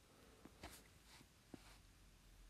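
Near silence: quiet room tone with a few faint short clicks.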